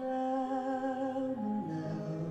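A male singer holding a long sung note with a gentle vibrato, then stepping down to lower notes about halfway through.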